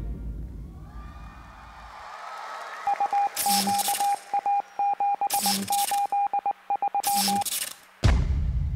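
Television show sound effect: after the tail of the music dies away, a rapid run of single-pitch electronic beeps broken up like Morse code, with three short bursts of static and a low thump about two seconds apart.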